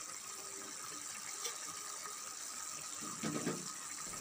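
Red chili-spice broth boiling in a wok: a steady, low bubbling hiss.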